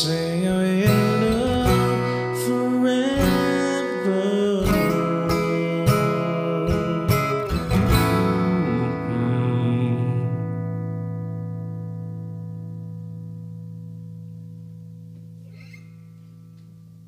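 A guitar strums chords as the song ends, with a voice holding the last sung word at the start. The strumming stops about eight seconds in, and the final chord rings on and slowly fades away.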